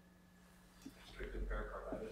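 Faint room hum, then about a second in a person begins speaking, muffled and indistinct, with a low rumble under the voice.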